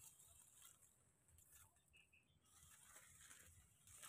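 Near silence: faint outdoor background hiss, with two tiny high peeps about two seconds in.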